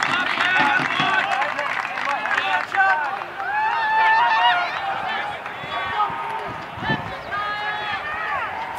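Many overlapping voices of players and fans at a baseball game: indistinct chatter and shouts, with a couple of long, drawn-out calls about four seconds in and again near the end.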